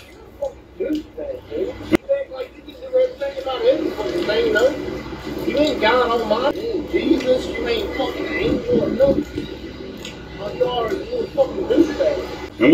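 Indistinct voices talking, with a steady low hum underneath and a single sharp click about two seconds in.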